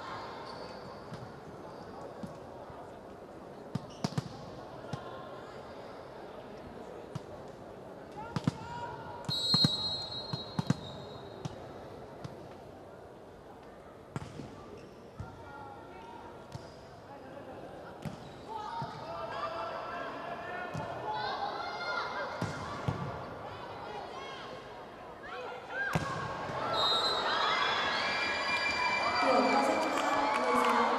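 Indoor volleyball rally in a large arena: the ball struck again and again by hands in sharp slaps. Players call out during the play, and after a short whistle near the end they break into loud shouting as the point is won.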